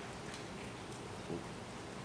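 Steady hiss of a courtroom microphone feed in a pause between speech, with a faint short sound about a second in.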